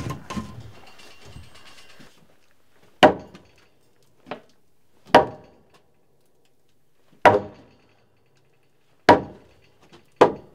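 Hammer blows on a timber roof frame: four heavy strikes about two seconds apart, with a lighter knock between the first two, each ringing briefly through the wood.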